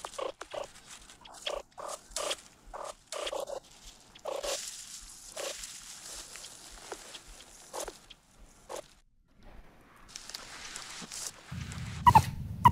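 Meerkat close calls: short, soft calls repeated every second or so by a foraging meerkat, with rustling in dry grass between them. These are contact calls thought to keep a foraging group together and to prevent separation.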